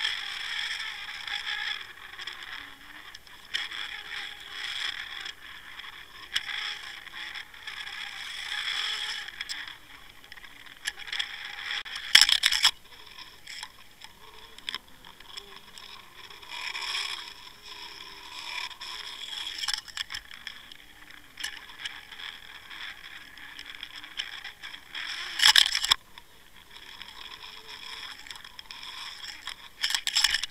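Scraping and rattling of a camera rig underwater, with two sharp knocks, one about twelve seconds in and one near twenty-five seconds.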